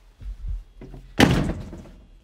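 Wooden front door pushed shut, closing with a single loud thud a little over a second in that fades over about half a second; a few soft low thumps come before it.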